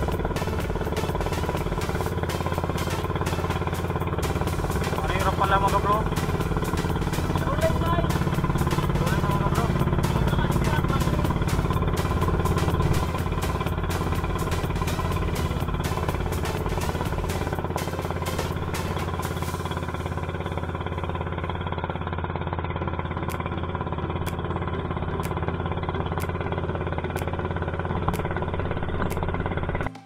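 Small engine of an outrigger fishing boat running at a steady speed, a constant drone, while the boat trolls. A voice comes in briefly around five seconds in and again a few seconds later.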